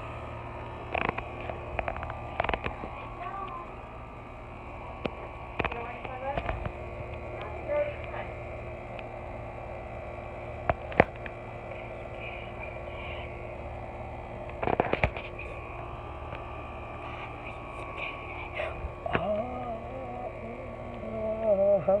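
Handling noise from a hand-held recording device: scattered knocks and bumps, the sharpest about eleven and fifteen seconds in, over a steady low hum. Faint voices come through now and then.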